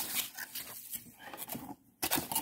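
Faint rustling and light handling noises of hands reaching into a cardboard shipping box during unpacking, fading out near the end.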